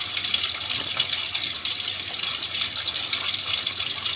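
Steady rush of water running through a drain pipe.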